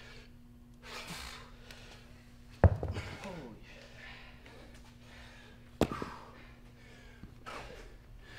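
Heavy exhaled breaths from exertion during weight swings, with two sharp knocks about a third and three quarters of the way through, the first the loudest. A low steady hum runs underneath.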